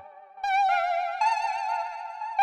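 Native Instruments Massive software synth playing its 'Dissonant Guitar' preset: high held notes with a wavering vibrato. After a brief gap a note comes in about half a second in, and a new note is struck a little past one second.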